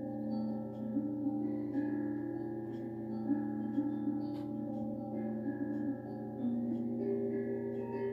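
Soft meditation music of sustained, bell-like tones that shift from one pitch to another every second or so over a low steady hum, played as the sound to focus on during a guided meditation.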